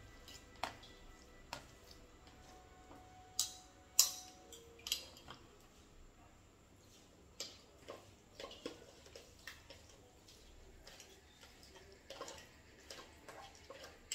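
Metal forks tapping and scraping against a tray and a stainless steel bowl as set gelatin is shredded and scraped out: faint, irregular clicks, the loudest a few seconds in.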